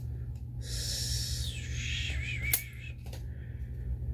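Old trading cards that are stuck together being peeled and slid apart by hand: a dry papery scraping for about two seconds, ending in a single sharp click.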